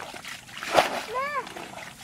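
Water splashing as a pot scoops through shallow muddy water, with one loud splash a little under a second in. A short high-pitched cry rises and falls just after it.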